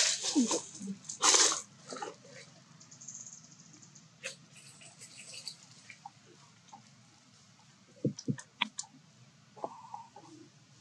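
Long-tailed macaques shifting about on dry leaf litter: scattered crunching rustles and sharp clicks, with a louder rustle about a second in and a quick run of clicks near the end.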